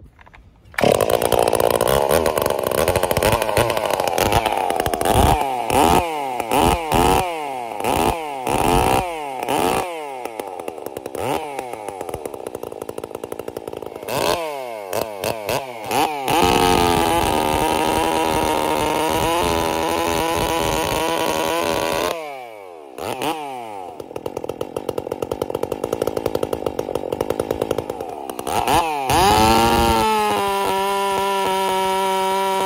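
Holzfforma G366 two-stroke chainsaw with a gutted, open-holed muffler fires up about a second in. It is revved in quick throttle blips that rise and fall, held at full throttle for about five seconds, drops back briefly, then revs again and climbs as it begins cutting into a log at the end.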